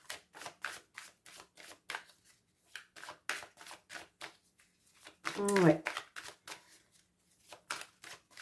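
A deck of oracle cards being shuffled by hand: a quick, uneven run of crisp card flicks and slaps.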